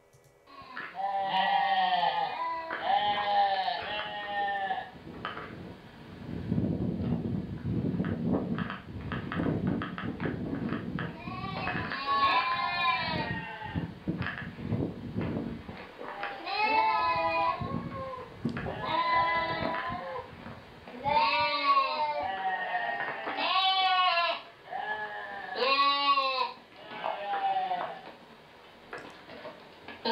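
Ewes and lambs bleating back and forth, many separate calls with some overlapping: the mother sheep calling to lambs shut away in a stone pen, and the lambs answering. A low rumbling noise runs under the calls from about 6 to 16 seconds in.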